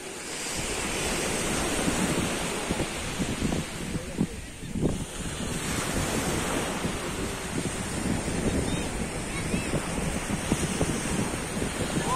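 Wind buffeting the microphone: a continuous rushing noise with gusty low rumble that eases briefly a few seconds in, mixed with the steady wash of distant surf.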